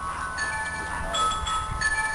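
Bell-like ringing tones at several pitches, a new one struck about every half second to second and each ringing on over a low background rumble.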